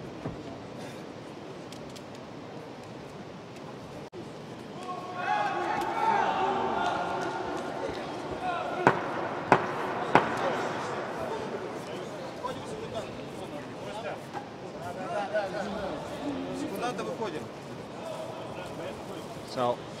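Steady hall background noise, then men's voices talking and calling out from about five seconds in, with three sharp smacks close together about nine to ten seconds in.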